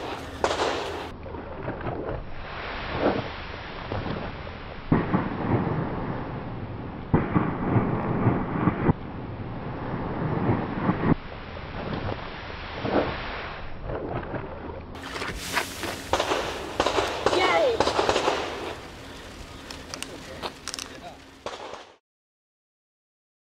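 A large devil's toothpaste reaction: concentrated hydrogen peroxide decomposing on potassium iodide, with foam and hot gas erupting in a rushing, crackling noise that surges in waves. Near the end a person's voice exclaims.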